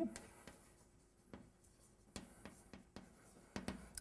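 Chalk writing on a blackboard: a few faint, short taps and scrapes spread over the seconds.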